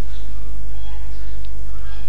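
Steady low electrical hum on the recording, loud and unchanging.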